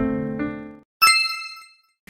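Piano background music dies away, and after a brief silence a single bright chime sound effect dings about a second in and rings down.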